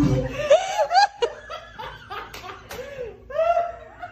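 Music cuts off at the very start, then a person laughs in short, repeated giggling bursts, with a few sharp taps in between.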